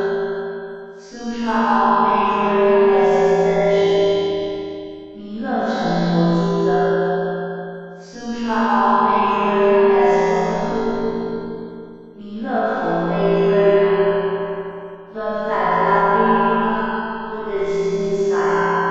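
Background music: a slow melody in repeating phrases of about three to four seconds, each swelling and then fading.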